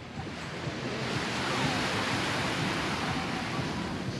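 Small waves washing onto a sandy beach: a steady rush of surf that swells about a second in.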